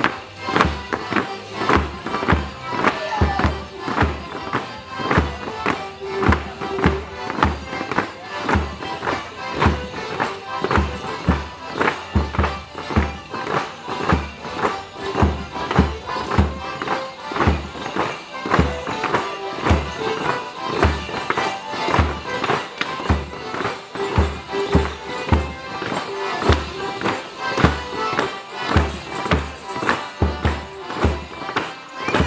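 Live traditional folk tune played for Morris dancing, with a steady low beat about twice a second.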